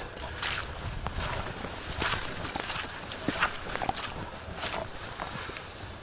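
Footsteps on a wet, muddy woodland path: irregular soft steps and small knocks. A low rumble from the moving, handheld camera runs underneath.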